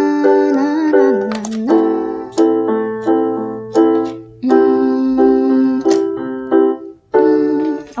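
Electronic keyboard with a piano voice playing held chords with both hands, changing about every second: the I–ii–IV–V progression in G major (G, A minor, C, D) played as a song.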